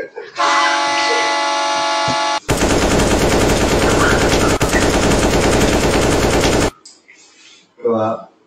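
Added comedy sound effects: a held horn-like tone for about two seconds, then about four seconds of rapid machine-gun fire that cuts off suddenly.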